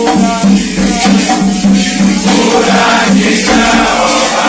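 A group singing a Candomblé chant for Xangô in unison, over the steady shaking of a hand rattle.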